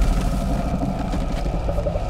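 A deep, loud low rumble with faint held tones above it.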